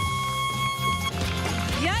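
A sound effect played on cue: one long steady high tone that dips slightly in pitch as it starts and cuts off about a second in. Background music with a steady beat plays under it.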